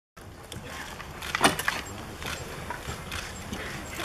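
Press photographers' camera shutters clicking irregularly, several in quick succession, the loudest cluster about one and a half seconds in.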